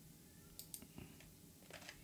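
Near silence with a few faint, scattered clicks of a computer mouse.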